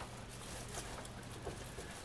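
Faint rustling of an artificial pine wreath's branches as they are handled and fluffed, with a few soft small ticks, over a low steady hum.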